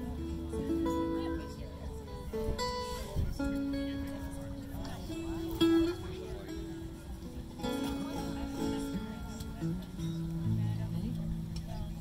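Acoustic stringed instruments being tuned: single plucked notes ringing out, their pitch adjusted and re-struck between tries, with guitar notes among them.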